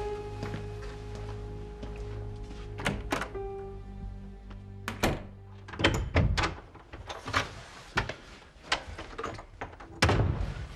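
Soft background score with sustained notes, overlaid by a series of sharp knocks and thumps: two about three seconds in, then several more from about five seconds on, the loudest cluster around six seconds.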